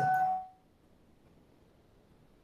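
The end of a voice with a steady ringing tone under it, dying away about half a second in; then near silence with faint hiss.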